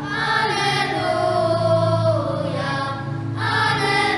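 A children's choir singing a hymn in long held notes, with instrumental accompaniment underneath.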